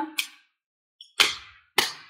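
Tarot cards snapping as the deck is handled and a card is pulled from it: a small click, then two sharp snaps a little over half a second apart in the second half.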